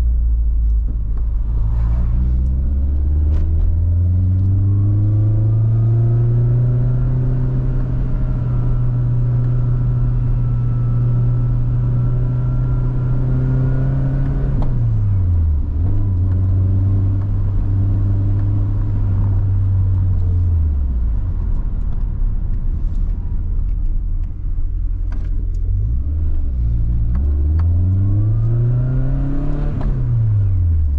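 Nissan 240SX's engine through an aftermarket exhaust, heard from inside the cabin while driving. The revs climb over the first few seconds and hold, fall away sharply about halfway through and settle lower, drop again, then climb once more and fall off near the end.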